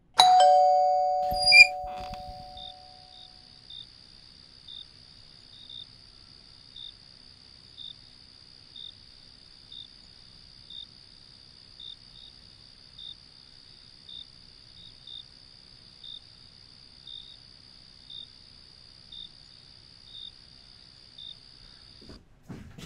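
A doorbell chime rings two notes at once that fade over about three seconds, with a sharp loud click just after it sounds. Then a steady high insect trill runs on, with a short chirp about once a second, like crickets at night.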